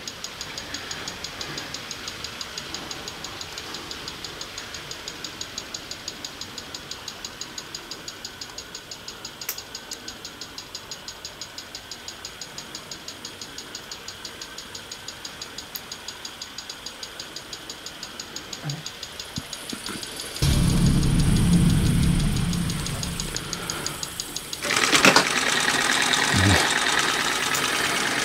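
TriField EMF meter clicking steadily at about three ticks a second. Near the end a loud low rumble lasts about four seconds, followed by louder rustling noise.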